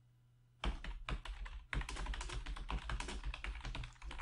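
Typing on a computer keyboard: a quick run of key clicks that starts about half a second in, with a short pause near the middle.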